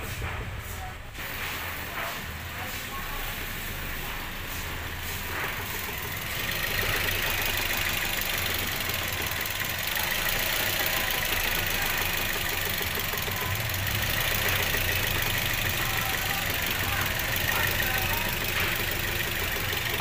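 Toyota Vios engine idling steadily, picked up close to the front strut mount; the sound gets a little louder about six seconds in.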